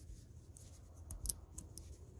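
A few faint, sharp clicks and light rubbing from a small aluminium carabiner being worked in the fingers, its gate and hinge moving.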